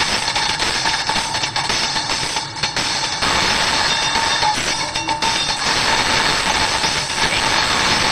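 Anime soundtrack: a loud, steady rushing noise with music underneath.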